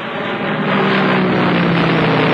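Piston aircraft engines droning steadily as a propeller-driven plane passes low, the pitch sinking slightly.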